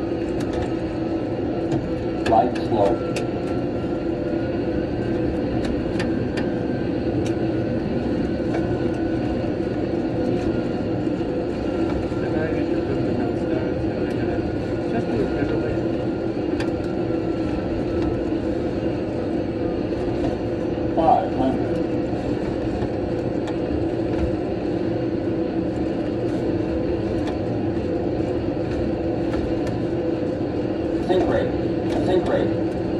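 Steady jet engine and cockpit noise from an airliner flight simulator, with brief louder sounds about two and a half seconds in and again about 21 seconds in.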